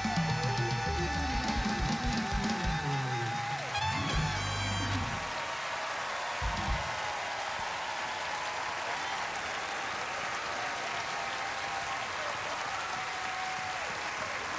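Live jazz band playing the last bars of a song, a wavering held note over drums and bass, with a last low hit about six and a half seconds in. Audience applause runs under the end and fills the rest.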